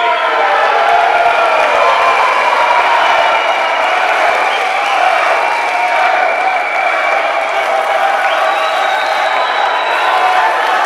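Spectators in a sports hall cheering and clapping, the noise jumping up in loudness at the start and staying loud.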